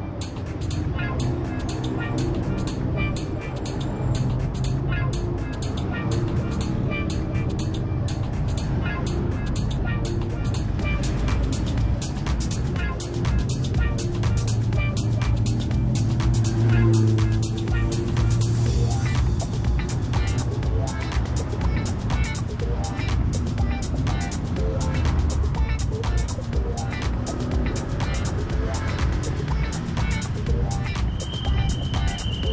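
Background music with a steady beat, with road traffic faintly underneath.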